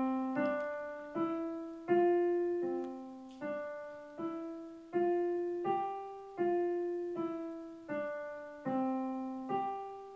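Digital piano playing a slow single-note melody in the middle register, one note about every three-quarters of a second, each struck note left to fade before the next and the pitch stepping up and down. It is a beginner's lesson passage, played evenly and without a slip: the teacher calls it super this time.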